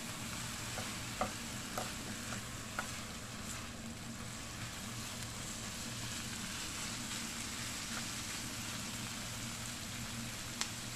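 Diced bacon and onion sizzling steadily in a nonstick frying pan, stirred with a spatula that knocks lightly against the pan a few times in the first three seconds.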